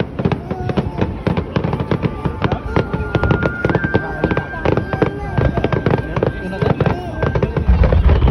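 Fireworks display: rapid crackling and popping from bursting shells throughout, with a steady high whistle through the middle and a deep boom near the end as a large shell bursts.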